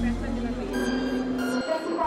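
A voice holding sung notes over music, with a steady low hum underneath that drops out briefly near the end.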